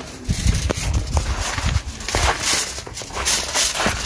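Footsteps in slide sandals on a wet tiled and concrete floor, an uneven series of soft thuds with a few sharp knocks.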